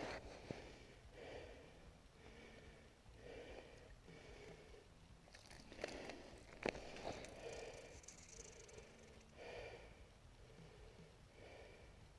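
Faint breathing of an angler hauling a hooked fish up through an ice hole by hand, soft breaths about once a second, with one sharp click about halfway through.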